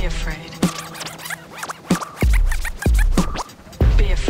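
Hip-hop beat with heavy kick drums and turntable scratching, with no rapping over it.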